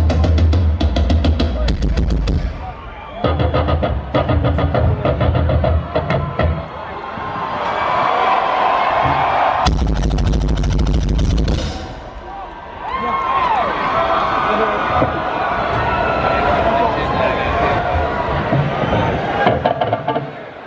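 Live rock band heard from the audience: a drum kit plays loud, heavy-kicked passages in bursts that stop and start, about three times. Crowd cheering and shouting fills the gaps and the last eight seconds.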